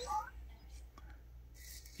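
A small toy robot gives a short chirp of gliding electronic tones just after being called by name, over a low room hum. A faint hiss follows near the end.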